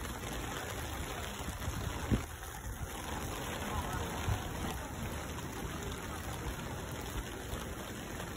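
Steady hiss of rain on a wet paved street, with a sharp knock about two seconds in and a softer one about four seconds in.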